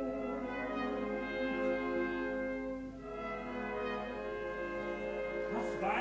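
Opera orchestra playing long sustained chords, with a singer's voice coming in near the end.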